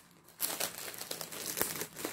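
Clear plastic wrapping around a pack of yarn skeins crinkling as it is handled and turned in the hand, starting about half a second in as a run of crackles.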